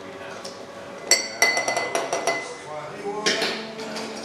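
Glassware and metal bar tools clinking as a cocktail is made. A sharp clink with a ringing note about a second in is followed by a quick run of clinks, and there is another clatter near the end.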